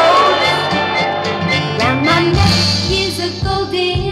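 A 1960s girl-group pop record playing: a full band with singing over a steady bass line.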